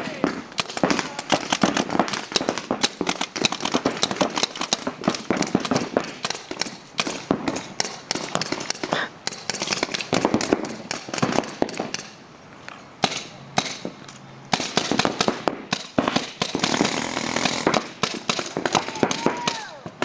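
Paintball markers firing in rapid, irregular volleys, many sharp pops overlapping, with brief lulls about twelve and fourteen seconds in.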